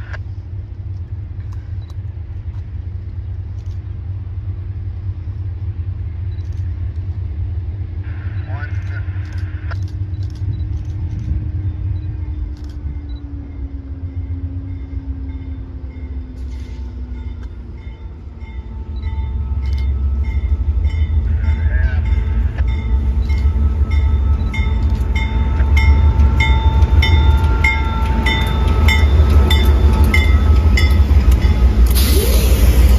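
Diesel freight locomotives approaching and drawing level, their low engine rumble growing clearly louder over the last third. Steady high tones sound from about halfway, and an evenly repeating ring, about two to three a second, joins in the last third.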